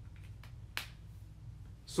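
A single sharp click about three quarters of a second in, with a couple of fainter ticks before it, over a steady low electrical hum.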